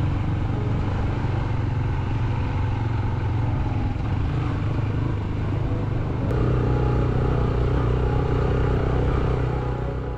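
Engine of the camera's vehicle running steadily at road speed over wind and road noise. About six seconds in, the engine note shifts and grows slightly louder.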